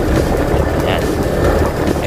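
Steady engine rumble and wind noise from the moving vehicle that carries the microphone.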